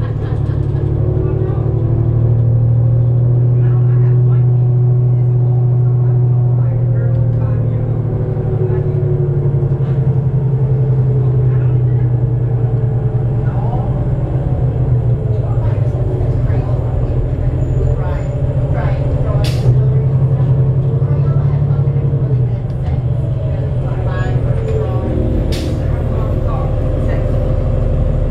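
Inside the cabin of a 2008 New Flyer D35LF transit bus under way: the heavy, steady rumble of its Cummins ISL diesel and Allison B400R transmission, the engine pitch rising and falling as the bus drives. Two sharp clicks come in the second half.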